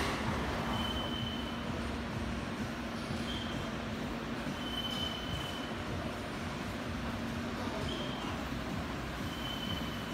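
Steady workshop machinery noise with a constant low hum, broken every second or two by short, thin high-pitched squeaks.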